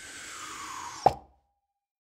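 A downward-sliding swoosh that ends in a single sharp pop about a second in, then the sound cuts off abruptly: a cartoon-style pop effect.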